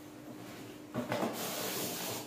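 Cardboard box being slid off a styrofoam-packed toaster. A sliding, scraping friction noise of cardboard against foam starts about a second in and continues steadily.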